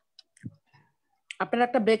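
A few faint, short computer-mouse clicks with one soft low knock, then a voice starts speaking loudly a little past halfway.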